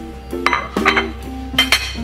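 A ceramic plate set down and handled on a stone countertop: a few sharp clinks about half a second in, near one second and near the end, over background music.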